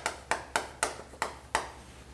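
Chalk striking a chalkboard while writing: about six short, sharp taps, roughly three a second.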